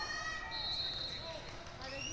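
Large sports hall ambience during a wrestling match: voices calling out, with high sliding squeaks such as wrestling shoes make on the mat.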